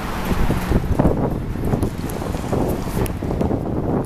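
Wind buffeting the camera's microphone, an uneven low rumbling noise.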